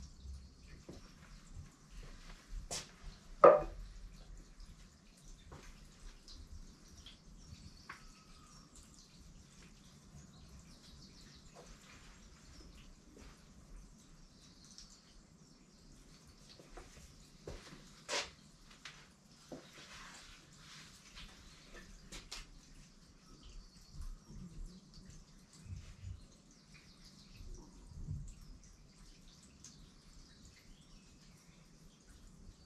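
Quiet, scattered taps and clicks of a pen and paper being worked on a table, with one louder knock about three and a half seconds in.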